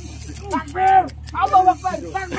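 Men's voices talking and calling out in short bursts over a steady low hum.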